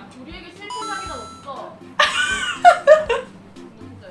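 A short, bright electronic chime sound effect, then women's voices exclaiming loudly, over light background music.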